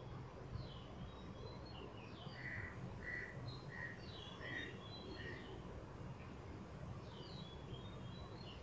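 Faint birdsong: scattered short high chirps and quick falling whistles, with a run of five evenly spaced lower notes starting a little over two seconds in, over a low steady hum.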